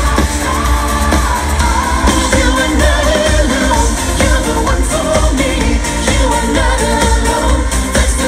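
Live synth-pop band playing over the venue's PA, with a male lead vocal over a heavy, steady bass beat, recorded from the audience.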